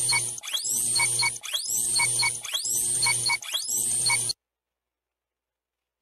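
Countdown timer sound effect: a one-second pattern repeating about once a second, each beat opening with a rising sweep and a few short tones, stopping suddenly a little over four seconds in.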